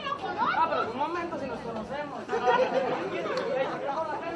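Several people talking at once, voices overlapping and unclear.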